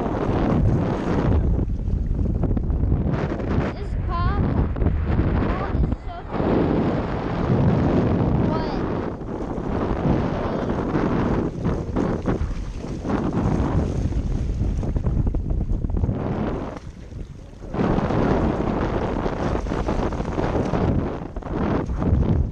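Wind buffeting the action camera's microphone, a loud low rushing noise that rises and falls in gusts and drops briefly around seventeen seconds in. A few faint short wavering calls sound over it.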